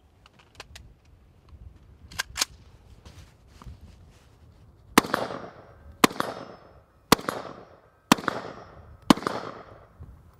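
AR-15 rifle fired five times at a slow, steady pace, about one shot a second, each shot trailing off in a short echo. A few light handling clicks come before the first shot.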